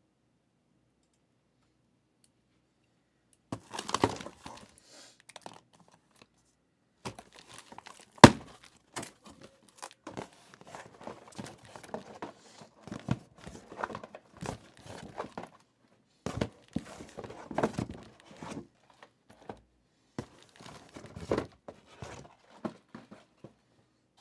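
A cardboard case of trading-card hobby boxes being opened and unpacked: packaging tearing and crinkling, with boxes and cardboard flaps handled and knocking together. It starts about three and a half seconds in, with one sharp knock about eight seconds in standing out above the rest.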